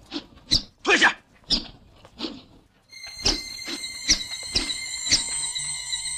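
Short sharp shouts of martial-arts students drilling with spears and staffs, five or six of them in the first half. About three seconds in, film-score music starts: held high notes with percussion strikes about twice a second.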